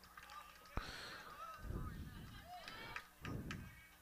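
Faint, distant shouts and calls from players and spectators at a baseball field, with one sharp click about three-quarters of a second in.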